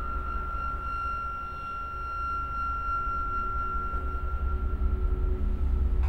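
A sustained high tone held over a steady low rumble, a tense drone in the film's score; the tone fades out shortly before the end.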